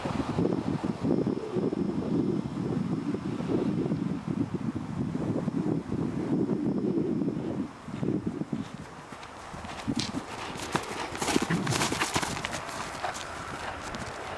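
Hoofbeats of a horse cantering on grass, with sharper, clearer strikes in the last few seconds.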